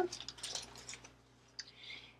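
Faint light ticks, then a brief soft rustle near the end as heat-resistant tape is peeled off a hot, freshly baked sublimation mug.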